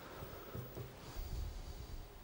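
Faint sounds of a flat watercolor brush stroking wet paint onto paper, with soft nasal breathing close to the microphone, loudest about a second in.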